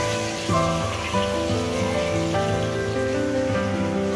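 Battered eggplant slices (beguni) sizzling steadily as they deep-fry in hot oil in a steel wok. Background music with long held notes plays over it.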